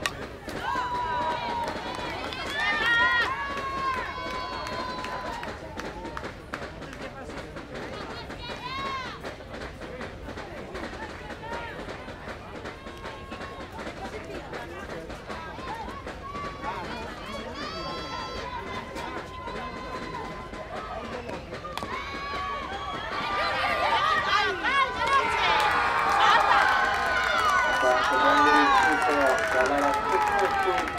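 Softball players calling out and chanting from the field and dugout, some calls held on one pitch. About 23 seconds in, the voices swell into louder cheering from many players at once.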